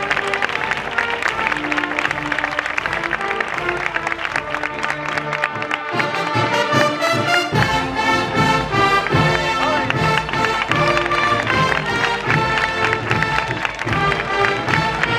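A Spanish agrupación musical, a cornet-and-drum procession band, playing a processional piece. It opens on held brass notes, and about six seconds in the drums come in and the full band plays on.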